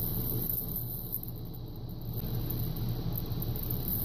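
Steady low hum with an even hiss: background room noise with no distinct handling sounds.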